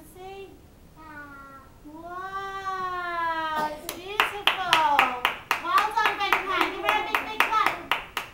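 Hands clapping in applause, starting about halfway through and carrying on quickly and unevenly, with high voices calling out over it. Before the clapping, a single high voice is drawn out in one long call.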